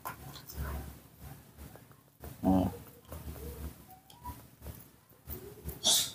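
A baby monkey's short calls, the clearest a brief pitched cry about two and a half seconds in, over soft knocks and rustling of handling close to the microphone.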